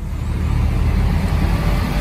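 Steady low rumble of road and tyre noise inside the cab of a moving pickup truck, starting abruptly.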